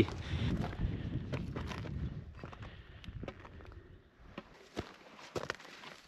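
Footsteps on rocky ground: scattered, irregular crunches and knocks of boots on loose stones. A low rumble under the first couple of seconds fades away.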